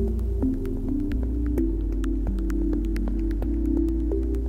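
Ambient electronic music from the u-he Bazille software synthesizer. A low, sustained synth bass changes note a couple of times under a shifting pattern of soft mid-pitched synth notes, with sparse glitchy clicks scattered over the top and no steady drum beat.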